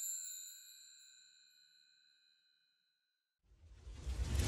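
A ringing chime sound effect from a logo sting, several high tones fading away over about two seconds into silence. Near the end a low rumbling whoosh effect starts to swell.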